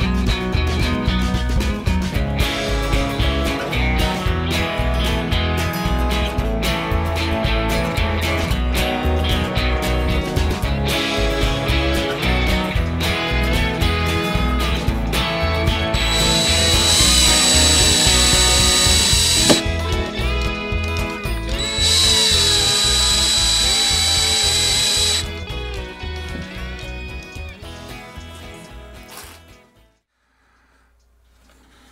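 Background guitar music with a steady beat, over which a power drill runs twice for about three seconds each, a steady high whine. The music fades out near the end.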